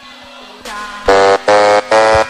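DJ air horn sound effect fired over the live mix in quick repeated blasts, about three short loud blasts of one steady pitch in the last second, after a quieter lead-in.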